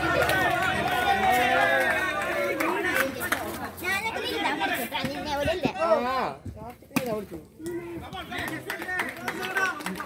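Several players' voices calling and chattering across an outdoor cricket turf, with a few sharp knocks among them.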